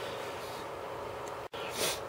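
Steady low room hiss that drops out abruptly about a second and a half in, followed by a short sharp breath in just before speech.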